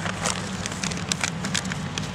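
Rustling and crinkling as a hand digs into a jacket's breast pocket and draws out a plastic food packet: a run of short, irregular crackles. Under it a steady low hum from a nearby factory.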